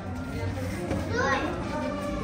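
Young children playing and vocalising, with one child's voice sliding up and down about a second in.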